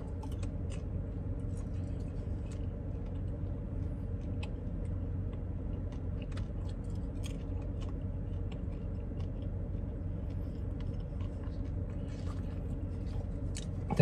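A person chewing popcorn, with small crunches and clicks scattered throughout, over a steady low hum inside a car.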